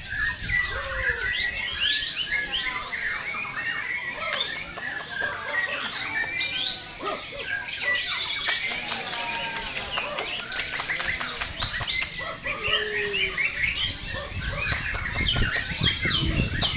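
Several white-rumped shamas (murai batu) singing at once in a dense, overlapping stream of rapid chirps and trills, broken by long, held high whistles. The singing grows louder near the end.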